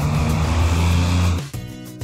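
Cartoon truck engine sound effect, a steady low rumble as the loaded car carrier drives away, cutting off suddenly about one and a half seconds in, over background music.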